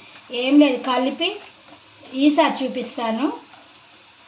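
A woman's voice speaking in two short phrases that the transcript did not catch. Between them there are faint cooking sounds from the pan of syrup-coated fried sweets.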